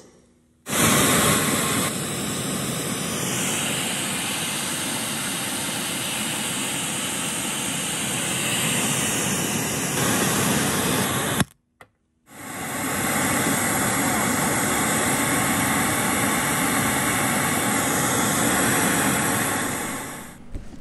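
Pink noise test signal played loudly through a 6x9 car-audio speaker: a steady, even hiss that cuts out briefly about eleven and a half seconds in, then resumes for a second run.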